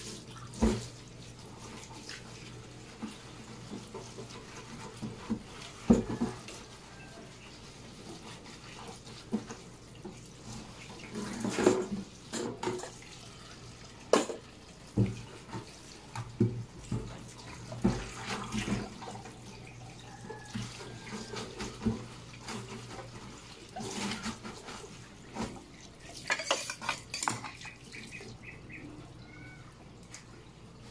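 Bitter gourd (ampalaya) leaves being washed by hand in a stainless steel sink: water splashing and sloshing in short bursts, with occasional knocks of a metal colander against the sink.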